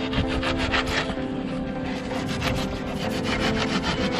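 A hand blade sawing through an expanded-polystyrene (tecnopor) block in quick back-and-forth strokes, a dry rasping rub. A steady low hum runs underneath.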